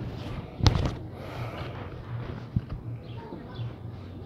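Street background with a low, steady hum, broken by a sharp knock about half a second in and a fainter click about two and a half seconds in.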